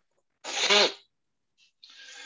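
A person sneezes once: a sharp noisy burst with a falling voiced tail. A softer breathy hiss follows near the end.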